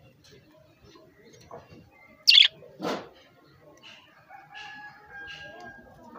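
Caged budgerigars chirping and chattering in short notes. There are two loud sudden sounds just after two seconds in and again just before three seconds, the first sharp and high, the second a fuller thump. In the second half a steady held note sounds.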